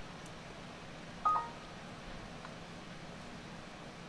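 A single short electronic beep about a second in, over a faint steady hiss.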